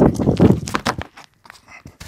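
Running footsteps: a soldier's boots striking a paved path in quick strides through the first second, then dying away to a few light knocks.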